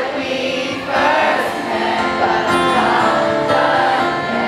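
Live concert audio recorded from the audience: a male singer with acoustic guitar performing a slow pop song, with many voices singing along.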